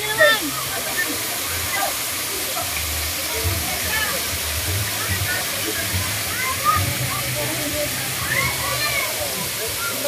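Water cascading over a rock wall into a pool as a steady rush, with splashing from people wading beneath the fall.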